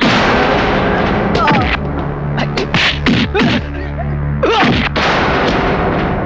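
Film soundtrack: a sudden loud hit at the start, then a continuous noisy din with short shouted voices over a low steady music tone.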